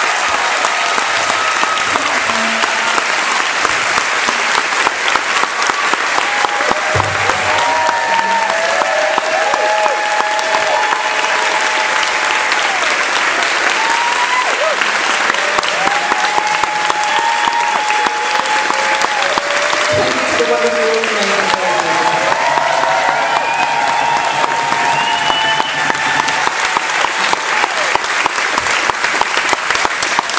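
Loud, sustained audience applause with cheering, running unbroken through the whole stretch. Held pitched tones sound over it at times.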